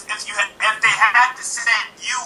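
Speech only: a voice talking over a Skype video-call line.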